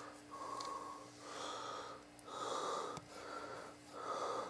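A person breathing in and out close to the microphone, about one breath a second, over a steady faint hum.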